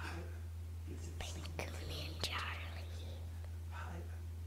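Faint whispering, with a few sharp clicks about a second in and again around two seconds, over a steady low hum.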